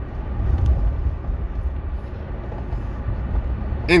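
Steady low rumble of a vehicle running, heard from inside its cabin.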